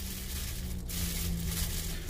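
Clear plastic wrapping crinkling faintly as it is handled, over a low steady hum.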